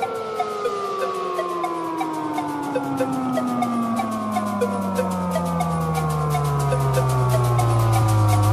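Electronic afro house music in a breakdown: a long synth tone slowly falls in pitch across several seconds over a steady ticking hi-hat pattern, with no kick drum.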